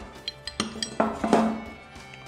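Small metal engine parts clinking together as they are handled, a few light clinks, over background music.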